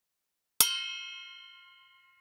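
A single bell-ding sound effect, struck once a little over half a second in and ringing out with several tones that fade away over about a second and a half.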